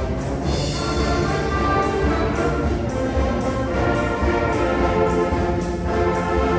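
A sixth-grade concert band of woodwinds and brass playing sustained chords.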